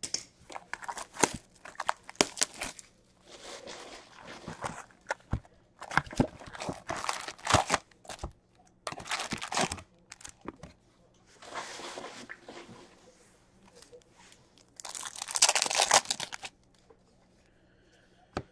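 A 2021-22 Upper Deck Series Two hockey hobby box being torn open and its foil card packs handled, with crinkling, tearing and scattered cardboard clicks and taps. Near the end there is a longer tearing rasp as a foil pack is ripped open.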